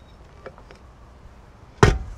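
A few faint handling ticks, then one sharp metal clunk near the end as the tilt head of a KitchenAid stand mixer, dough hook fitted, is lowered and locks down over the steel bowl.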